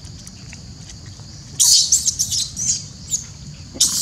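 Long-tailed macaques screeching: a cluster of loud, high-pitched shrieks starts about one and a half seconds in, and another begins just before the end. A steady high hiss runs beneath them.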